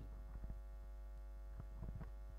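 Steady electrical mains hum picked up through the microphone and sound system, with a few faint knocks of a handheld microphone being handled, about half a second in and again near the end.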